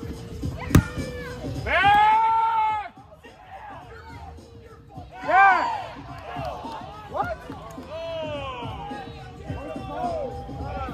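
A single sharp smack of a rubber kickball being struck, about a second in. Loud, long shouts from players and spectators follow twice, over a background of overlapping voices.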